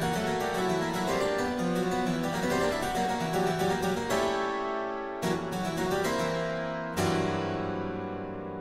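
Solo harpsichord playing a busy passage of quick notes. It then strikes separate full chords about four, five and seven seconds in, and the last one is left to ring and fade.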